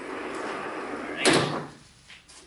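Vertical sliding chalkboard panel pulled down along its track, a steady sliding noise for about a second, then one loud bang as it hits its stop.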